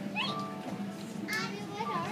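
Children's high-pitched voices and squeals rising in pitch among a chattering crowd, over a steady low hum.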